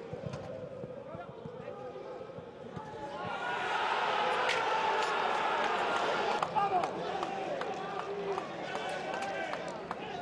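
Live football match sound: players' shouts and a small crowd's voices, swelling into shouting and cheering about three seconds in as a goal is scored, with scattered thuds of the ball and boots.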